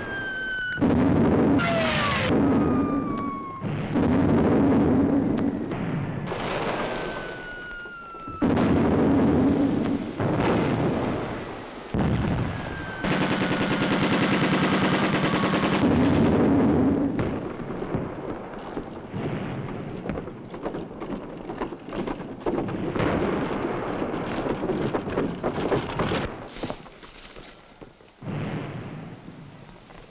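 Battle sound effects: incoming shells whistle down in pitch and burst in loud explosions, several times over. A stretch of rapid machine-gun fire comes in the middle, followed by scattered shots.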